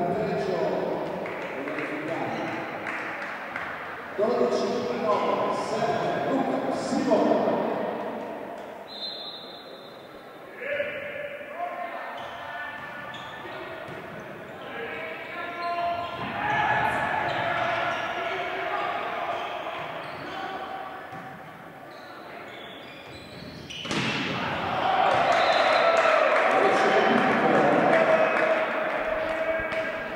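Indoor volleyball play in a large echoing sports hall: the ball struck and hitting the floor, players calling and shouting, and a short referee's whistle about nine seconds in. The shouting swells loudest near the end as the rally ends in a point.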